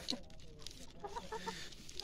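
Chickens clucking softly, a run of short clucks in the second half.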